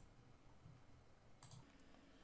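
Near silence: room tone, with a faint mouse click about one and a half seconds in.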